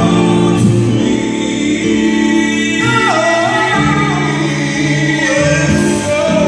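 Two men singing a gospel song over sustained chords on an electronic keyboard, the sung line sliding down in pitch about three seconds in.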